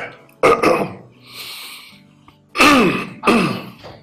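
A man coughing hard, as if choking: a pair of harsh coughs near the start, a wheezing breath, then two more loud coughs near the end.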